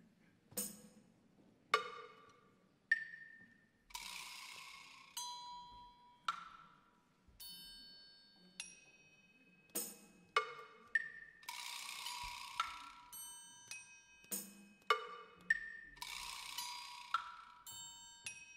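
Quiet, scattered struck notes on small hand-held percussion: single bell-like tones that ring and die away, about one every second or so. A few brief hissing rattles sound between them, near 4 s, midway and near the end.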